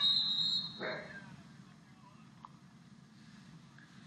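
Referee's whistle blown for a foul: a steady high tone that fades out about a second in, followed by faint background hiss.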